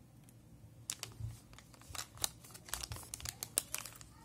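A metallized anti-static bag being handled and pulled open, crinkling and crackling. The crackles are sparse at first and come thick and irregular from about a second in.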